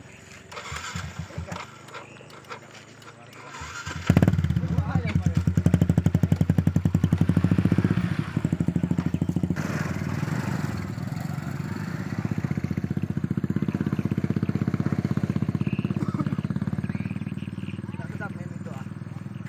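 A motorcycle engine running close by, coming in loud and sudden about four seconds in and then holding a steady rapid beat of firing pulses, easing slightly near the end. Voices are heard faintly before it.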